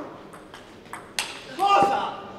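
Celluloid-free plastic table tennis ball clicking off bats and table in a fast rally, three hits about half a second apart. Near the end a player's loud shout as the point is won.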